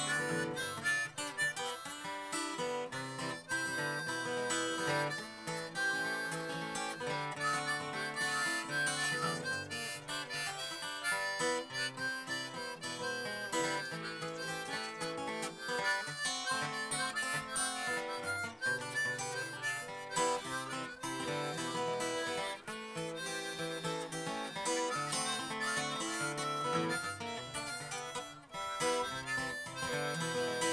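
Harmonica and acoustic guitar playing a tune together, with no pauses.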